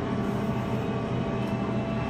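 Steady background din of an amusement arcade: a constant mix of machine hum and noise, with a few faint steady tones and no distinct events.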